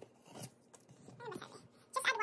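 Cardboard pancake-mix box being handled, with a short rustling scrape about half a second in.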